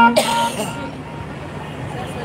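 A brief loud rustle of cloth brushing against the phone's microphone, followed by a steady background murmur of a crowd with faint distant voices.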